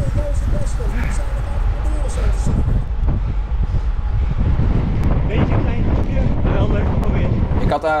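Wind buffeting the microphone of a handlebar-mounted camera on a road bike ridden at race speed: a loud, steady low rumble that cuts off near the end.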